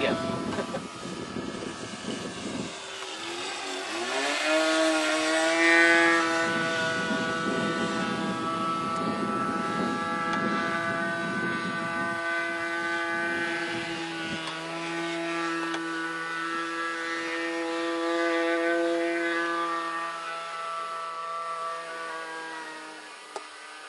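The 15 cc OS engine of a 2 m radio-controlled Gerle-13 model biplane running in flight. Its steady engine note sweeps down and back up about three to four seconds in, then holds level and eases off near the end.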